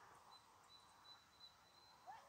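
Near silence: faint outdoor background noise with a thin, faint high tone that comes and goes.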